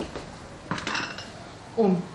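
A brief clatter and clink of tableware about a second in, with a faint metallic ring. A voice says a short phrase near the end.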